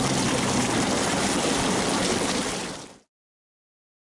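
Jeep's front tyre churning through a flooded trail of meltwater and broken ice: a steady rush of splashing water that cuts off abruptly about three seconds in.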